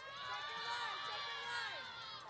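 Audience cheering and yelling, many voices shouting at once.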